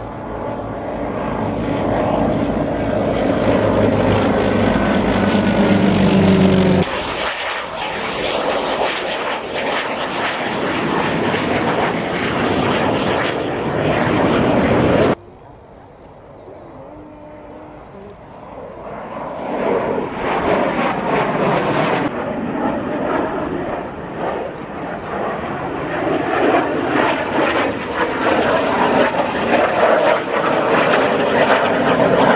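Radial engines of two North American T-28 Trojan propeller planes droning past overhead in formation, with a steady multi-tone hum, until an abrupt cut to broad rushing engine noise. After a second sudden cut to a quieter stretch, the roar of an F-86 Sabre jet builds up and carries on through the second half.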